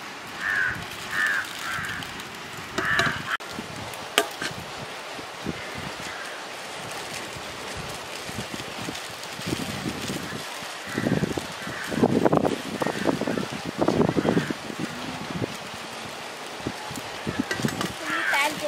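A metal ladle scooping rice from an aluminium pot and knocking on it in a few sharp clinks, with foil pouches rustling as they are handled and filled.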